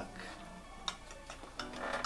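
A few faint, short clicks and taps in a quiet room, with a low voice starting up near the end.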